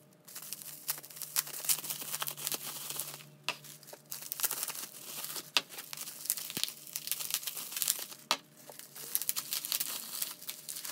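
Plastic bubble-wrap bags crinkling and rustling as they are handled and pulled off plastic slime tubs, with irregular sharp crackles throughout.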